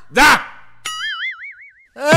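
Comic 'boing' sound effect: a sudden wobbling, springy tone that starts just under a second in and lasts about a second, following a short spoken syllable.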